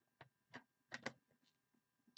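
Near silence broken by four or five faint, short clicks.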